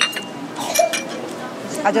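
Chopsticks clinking against a dish twice, at the very start and again a little under a second in, each a short ringing click.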